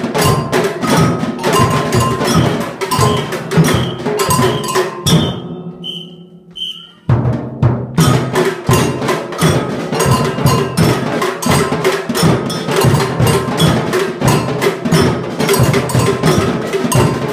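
Children's samba percussion band playing a steady, driving rhythm on surdo bass drums and smaller hand percussion. About five seconds in the drums thin out and three short high notes sound, then the full band comes back in at about seven seconds.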